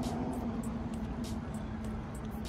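Steady low mechanical rumble with a constant hum, under many light, irregular ticks and drips of water close by as a kayak paddles.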